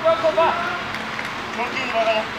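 Mostly speech: a man's voice speaking briefly in short phrases over a steady background hiss of outdoor ambience.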